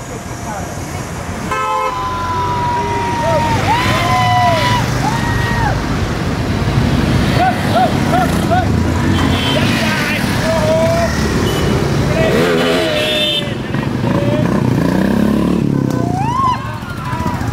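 A group of motorcycles setting off together, engines running and revving, with horns sounding: a long blast in the first few seconds and a quick run of short beeps around the middle.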